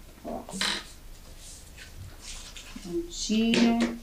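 Brief wordless vocal sounds from a woman: a short hum just after the start and a longer held, pitched vocal sound near the end, with faint paper handling between them.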